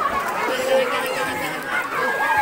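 Crowd chatter: many adults' and children's voices talking and calling over one another at once.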